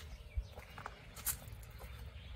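A few soft footsteps and clicks over a steady low rumble of wind on the microphone.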